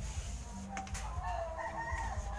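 A rooster crowing once in the background: one long drawn-out call starting under a second in, with a few light clicks alongside it.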